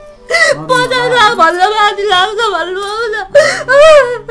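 A woman wailing and sobbing, her voice quavering and breaking as she cries out, with a brief catch of breath just past three seconds before a loud renewed cry.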